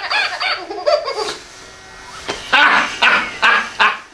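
A man laughing hard. A quick run of 'ha-ha' laughs trails off about half a second in, and after a short pause comes a second fit of loud bursts of laughter.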